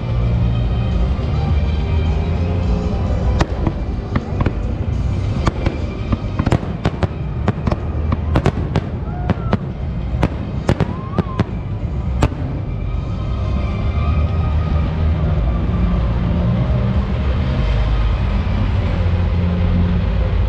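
Fireworks going off: a quick run of sharp bangs, densest in the middle, from about three seconds in until about twelve seconds in. Music plays underneath throughout.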